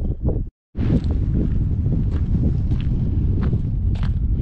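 Wind buffeting the microphone: a steady, fairly loud low rush of noise that starts after a brief dropout about half a second in.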